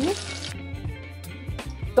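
Green-pea and besan squares shallow-frying in a little oil in a frying pan, the oil sizzling and crackling. The sizzle thins out after about half a second, leaving scattered crackles over soft background music.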